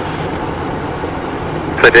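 Steady cockpit noise of a Cessna Citation Encore twin-turbofan business jet in the climb: an even rush of air with a low engine hum. A radio voice cuts in near the end.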